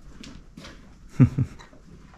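Pony in its stall giving a short, low grunt in two quick pulses falling in pitch, about a second in.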